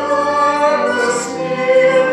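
A choir singing sacred music in long, held notes, with a sung hiss of a consonant about a second in.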